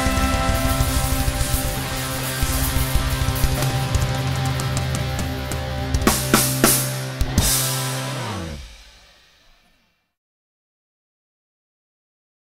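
Live ska band with guitar, bass, drums and brass, playing out the end of a song: a run of hard drum and cymbal hits about six to seven seconds in, then a last held chord whose low notes slide downward as it fades. The sound dies away to silence about ten seconds in.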